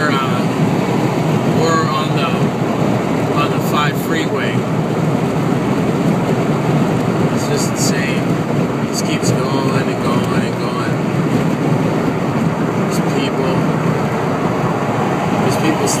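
Steady road and wind noise of a car driving at freeway speed, heard from inside the cabin.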